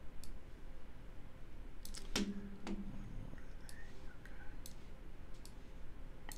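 Scattered single clicks of a computer mouse, about half a dozen, the loudest about two seconds in, followed by a short low hum.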